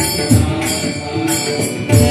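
Marathi devotional bhajan music: a group of small hand cymbals (taal) clashing in rhythm over a low drum beat about twice a second, with a held melody from harmonium and voice.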